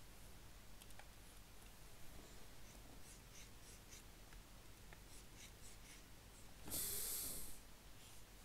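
Faint scratching and tapping of a pen stylus on a graphics tablet while painting, with a louder breathy hiss lasting about a second near the end.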